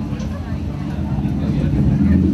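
A loud, steady low drone with faint, indistinct voices of people talking.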